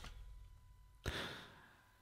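A person's soft exhaled breath, a brief sigh about a second in, against near-quiet room tone.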